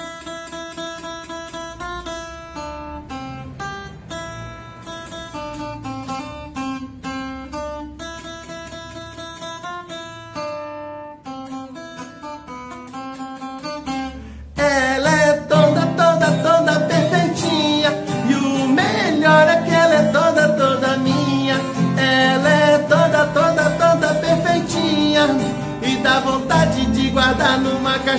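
An acoustic guitar picks out a song's melody one note at a time. About halfway through, a much louder sung song with fuller accompaniment comes in suddenly.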